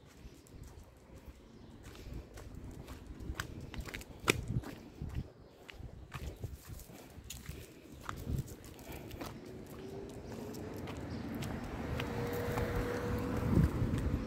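Footsteps on pavement while walking a small dog on a leash: irregular clicks and scuffs. Toward the end a rushing noise grows steadily louder, with a faint steady hum in it.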